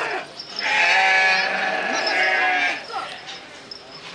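A young goat bleating: one long, loud bleat of about two seconds, starting about half a second in.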